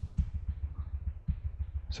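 Computer keyboard keys, the arrow keys, tapped in a quick, irregular run of light clicks while scaling a shape on screen.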